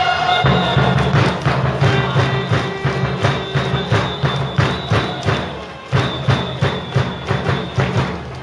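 Baseball cheering section beating drums in a steady rhythm, about three beats a second, with a horn holding long notes over them.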